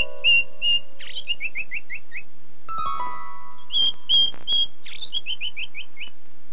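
Cartoon bird song: a whistled phrase of three steady notes and then a quick run of five falling notes, sung once and then repeated by the mockingbird as a copy. A few ringing chime-like music notes sound under the first phrase and again just before the second.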